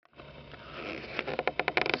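A person breathing in through the nose, a sniff that swells over about a second and a half, with a few quick clicks just before speech.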